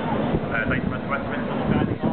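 Helicopter flying low overhead, its rotor and engine noise mixed with people talking, the voices clearest from about half a second in.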